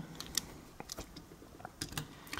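Faint scattered clicks and taps of a 1:64 diecast model car being handled and set down on a wooden table.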